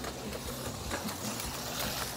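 HO-scale slot car (a 1969 Dodge Charger Daytona on an Auto World X-Traction chassis) running laps on a plastic track, a steady whir of its small electric motor and gears with the rattle of the car in the slot.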